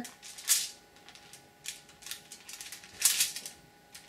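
Hands pressing and smoothing shaving cream over a sheet of aluminium foil: the foil crinkles and rustles in a few short bursts, the loudest about three seconds in.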